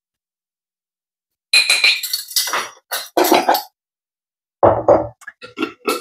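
Small glass jars and a spoon clinking and rattling as they are handled over a glass baking dish: a run of clinks with a short ringing after about a second and a half, then a few lighter knocks near the end.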